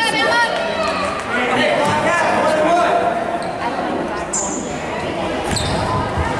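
Basketball bouncing on a hardwood gym floor as a free throw is set up, with voices calling out across the echoing gymnasium.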